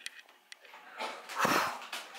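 A man blowing out a long, breathy exhale, a "whew", starting about a second in, after a couple of faint clicks.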